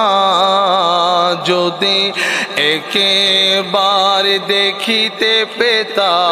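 A man singing a Bengali Islamic gojol into a microphone, holding long, wavering ornamented notes with short breaks between phrases.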